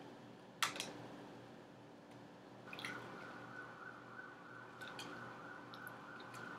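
Faint mouth sounds of eating a cream-filled doughnut: a sharp click about half a second in, then soft scattered clicks and smacks of chewing. A faint steady high tone comes in near the middle.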